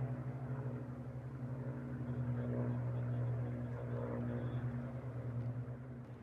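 Supermarine Spitfire's Rolls-Royce Merlin V12 engine running steadily as the fighter flies past overhead: a low, even hum with a slight flutter. It drops away suddenly near the end.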